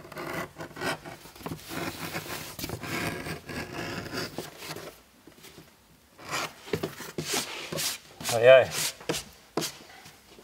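Leather edge beveller scraping along the edge of a cut leather piece, taking a bevel off: quick rasping strokes run together for the first five seconds, then come as separate shorter strokes. A short wavering squeak about eight and a half seconds in is the loudest sound.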